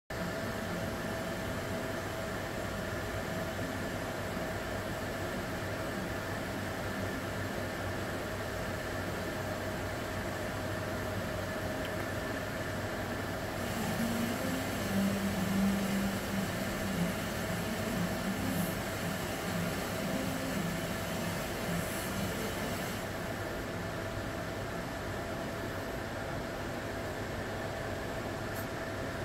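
Steady background hum and hiss with two faint, thin whining tones. About halfway through it grows somewhat louder for several seconds, with a low drone, then settles back.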